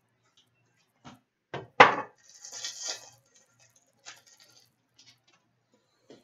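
A stack of trading cards being handled and flipped through by hand: a few sharp taps, the loudest just under two seconds in, followed by about a second of light sliding and rustling, then a couple of soft ticks.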